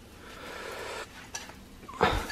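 A pancake sizzling softly in a small skillet over a gas flame. The hiss fades after about a second, and a faint tick follows.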